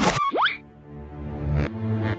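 Cartoon sound effects: a short burst, then a quick rising whistle-like glide, followed by background music with low sustained notes.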